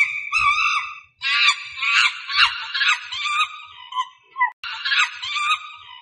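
Monkey calls: a run of rapid, high-pitched chattering calls repeated over and over, broken by short pauses about a second in and again past four seconds.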